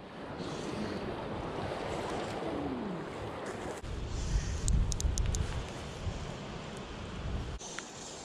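Creek water running, with wind buffeting the microphone in a heavy low rumble from about four seconds in until near the end.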